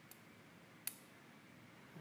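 Eterna push-button fold-over bracelet clasp clicking shut: a faint click at the very start, then a single sharp click a little under a second in, with near silence around them.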